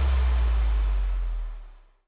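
Deep, steady low drone of an intro sound effect with a faint hiss above it, fading away to silence near the end.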